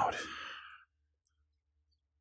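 A man's soft, breathy exhale that fades out within the first second, followed by silence.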